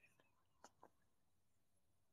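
Near silence: dead air on the call, with two faint brief ticks a little after half a second in. The guest's microphone is not coming through.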